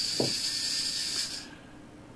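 Fusion educational robot's drive motors running as it drives forward, a steady high-pitched whine that cuts off about one and a half seconds in when the robot stops for its programmed pause. A short click is heard just after the start.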